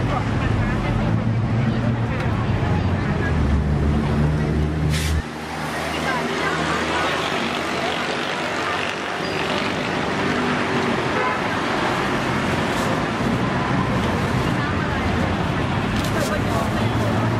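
Busy street-market ambience: voices chattering over a low motor hum, which cuts off suddenly about five seconds in.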